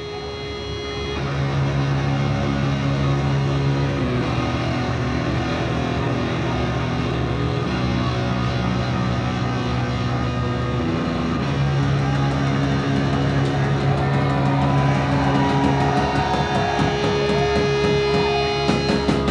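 Live punk rock band opening a song with electric guitars holding long, droning low notes that change every few seconds over a steady higher held tone. It fades in over the first couple of seconds, then stays loud and even.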